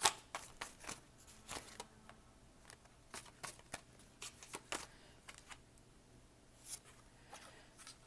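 A deck of tarot cards being shuffled and handled by hand: soft, irregular clicks and flicks of card edges, with a sharper click at the very start and a quieter stretch a little past the middle.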